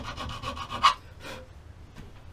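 Hand file rasping across the edge of a Mossberg 930 shotgun's aluminium receiver, bevelling the loading port. One long stroke ends about a second in, and a short, fainter scrape follows.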